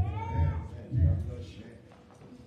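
Voices of a congregation just after the prayer's amen: low murmuring voices, with one high voice rising and then falling in pitch in the first half second.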